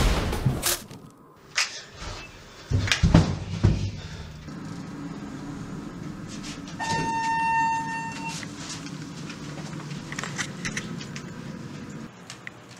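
Several loud thuds and bangs of a scuffle in a steel elevator car in the first four seconds. Then, about seven seconds in, a single electronic elevator chime is held for about a second and a half over a steady low hum.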